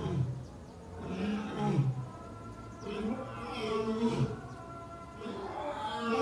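A lion making strange, drawn-out calls, several in a row, each about a second long, in reaction to hearing the call to prayer.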